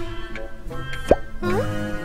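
Children's cartoon background music with a quick upward-gliding 'bloop' sound effect about a second in, the loudest moment, followed by a shorter rising glide near the end.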